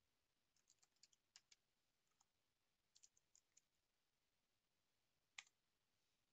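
Faint computer keyboard keystrokes: a scattered run of light key clicks over the first few seconds, then a single louder key press near the end.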